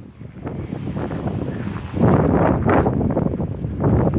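Wind buffeting the microphone in gusts, a rough low rumble that swells louder about halfway through.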